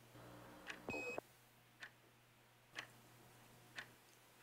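A clock ticking faintly, one tick a second, in a quiet room. About a second in there is a brief louder noise with a short high beep.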